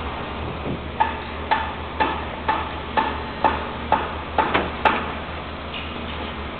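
Repeated hammer blows ringing on metal, about two a second and ten in all, the last few coming a little quicker, over a steady low hum of site machinery.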